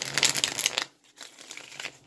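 A rustling, crinkling handling noise as a hand and sleeve reach toward a deck of tarot cards, lasting just under a second, then quiet.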